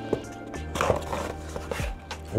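Cardboard pizza box lid being lifted open: a click and a few brief rustles of cardboard, over quiet background music.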